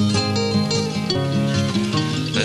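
Music: an instrumental passage of a sung-poetry song, with plucked acoustic guitar playing a run of notes between sung lines.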